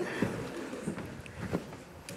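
A few faint, separate taps of a blue-and-gold macaw's feet on a wooden desk as she steps along it, over low studio background noise.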